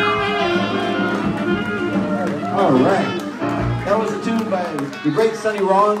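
A jazz band's final held chord, with saxophones, rings out and stops in the first moment. Audience applause and voices calling out follow.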